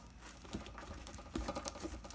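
Fluffy glitter slime being stretched and kneaded by hand, making faint, quick sticky clicks and crackles, a little louder from about a second and a half in.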